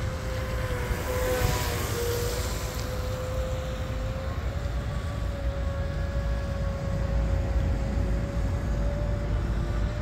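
A distant RC speedboat's brushless motor (RocketRC 4092 1520kV, on 8S) whines at a fairly steady pitch during easy cooling-down laps. The pitch dips briefly about two seconds in, then creeps slowly up. Wind rumbles on the microphone underneath.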